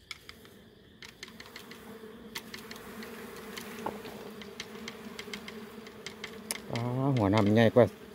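Swarm of dwarf honeybees buzzing steadily around their freshly cut comb, the buzz growing louder over the first few seconds, with scattered sharp clicks and snaps of the bamboo twigs as the comb is handled.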